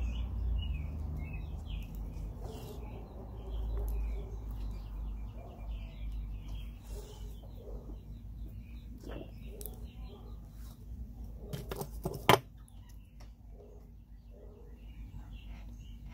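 Small birds chirping over and over in the background, over a low rumble. A single sharp click stands out about twelve seconds in.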